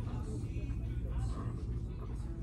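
Shop ambience: indistinct voices of other people over a steady low rumble.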